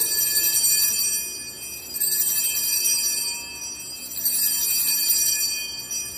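Altar bells rung three times, each a high jingling ring of about two seconds. They mark the elevation of the chalice at the consecration.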